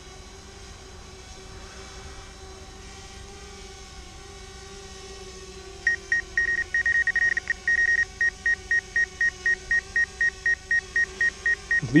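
DJI Spark collision-avoidance warning beeps from the flight app, meaning the drone's obstacle sensing has picked up something close by. The high-pitched beeping starts about halfway through, rapid at first, then settles to about three beeps a second. A steady hum runs underneath.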